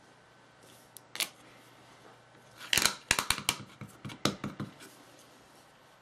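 Hands handling clear plastic stamps and card stock on a craft table. There are a couple of light clicks about a second in, then a quick cluster of clicks and rustles in the middle.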